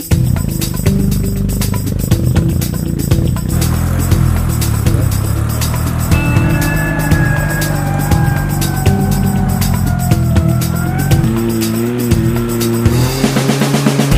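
A sporting trials car's engine running and revving under load, mixed with a backing music track that has a steady beat.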